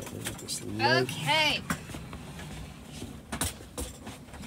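A person's voice sings two short wordless notes about a second in, each sliding up and back down. A few sharp clicks follow near the end.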